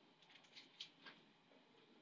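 Near silence with several faint, short scratches in the first second: a stylus drawing strokes on a tablet.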